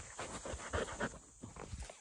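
A dog panting close by, a quick run of short, breathy puffs.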